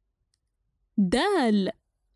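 Silence for about a second, then a narrator's voice speaking a single short word, the letter name 'dal'.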